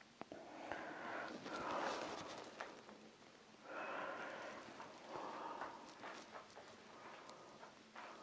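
A person breathing out heavily, in three long, faint breaths.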